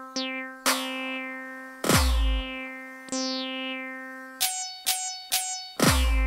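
Electronic background music: short synth plucks repeating on a steady pulse, with a deep bass hit about two seconds in and another near the end.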